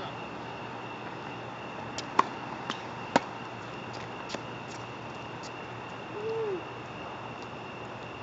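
Tennis ball being hit back and forth: sharp pops of the ball off racket strings and on the hard court, the two loudest about two and three seconds in, then fainter ones. A short low hoot rises and falls about six seconds in, over a faint steady high tone.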